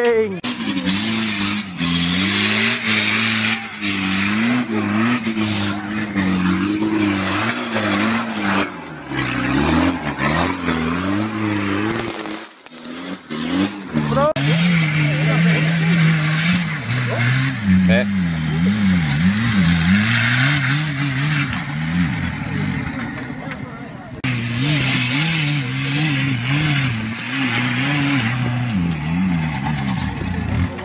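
Off-road 4x4 engine revving hard and unevenly under heavy load, pitch rising and falling as the vehicle claws up a steep dirt climb with its wheels spinning on loose ground. The sound dips briefly about twelve seconds in. A second engine, a Jeep Cherokee's, then carries on the same rising and falling revving.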